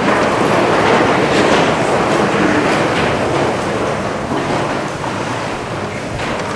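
A congregation sitting down in the pews: a broad wash of rustling and shuffling that starts at once and slowly dies away.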